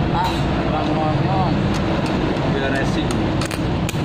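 Voices in the background over steady noise, then a few sharp crackles near the end as a stick-welding electrode strikes an arc on the steel.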